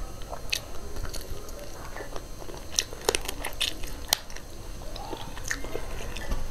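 A person chewing fried meat and rice with the mouth, with wet smacks and sharp crunches scattered throughout, bunched together around the middle and again near the end.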